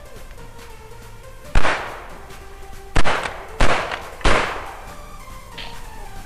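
Four shotgun shots over background music: the first about a second and a half in, then three more in quick succession about a second later, each a sharp crack with a short echoing tail.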